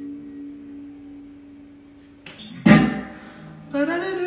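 An electric guitar's last chord ringing out and fading away. About two and a half seconds in there is a loud thump with a short decay, and a man's voice begins just before the end.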